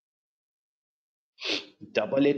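Dead silence, then about one and a half seconds in a short, sharp burst of breath noise from the speaker, a quick intake or sniff, just before his voice resumes.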